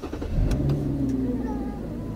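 Car engine running and pulling away, a low steady hum whose pitch drifts slowly.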